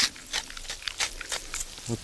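Wok over a charcoal fire, sizzling and crackling in a light, irregular way as the hot oil and first ingredients fry.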